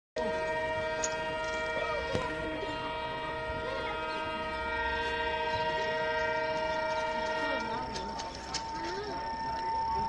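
A locomotive's air horn sounding one long continuous blast of several notes together, over the rumble of a train running on the rails. Most of the notes stop about three-quarters of the way in, while one keeps sounding to near the end.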